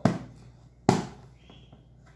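Two sharp plastic snaps as a Tupperware pickle keeper's lid is pressed down onto the container to seal it, the second about a second after the first.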